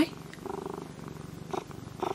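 Domestic orange tabby cat purring steadily, close to the microphone.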